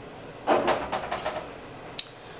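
A short cluster of small knocks and rattles about half a second in, then a single sharp click near the end: a plastic bottle of tacky glue being picked up and handled on a wooden table.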